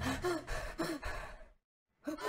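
A cartoon character's frightened gasps: a few short, breathy gasps that fade away, ending in silence about one and a half seconds in.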